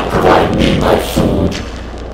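Loud, distorted horror sound design: a run of heavy thuds, about two or three a second, over a steady low hum, easing off near the end.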